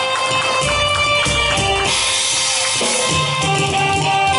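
Live stage-fight accompaniment for a Taiwanese opera combat scene: drums and other percussion struck under melodic instruments holding steady notes.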